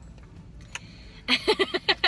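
A low, steady hum, then a woman laughing in short, loud bursts starting about two-thirds of the way in.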